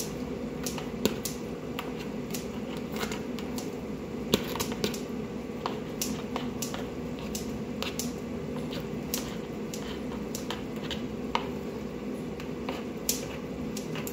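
Kitchen scissors snipping through bihon rice noodles held in a plastic colander: a long run of irregular, crisp snips, over a steady low hum.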